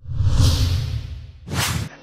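Whoosh sound effects of a news title-card transition: a swoosh with a low rumble that fades out over about a second, then a second, shorter and brighter swoosh near the end that cuts off suddenly.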